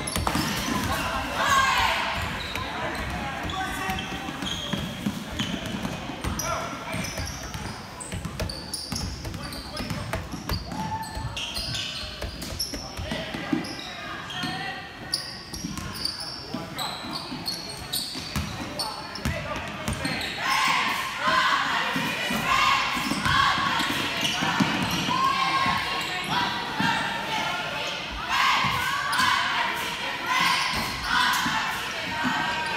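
Basketball dribbled and bouncing on a gymnasium's hardwood floor during a game, with voices of spectators and players shouting in the hall. The voices grow louder about two-thirds of the way through.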